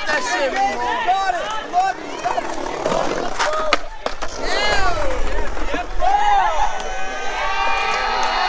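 Skateboard wheels rolling on a concrete bowl and grinding along the coping, the rumble strongest about halfway through, over voices and shouts from onlookers.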